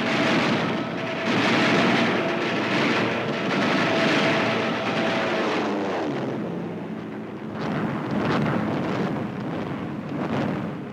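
Propeller warplane engine noise, a dense drone that swells and ebbs, with a few dull booms in the second half.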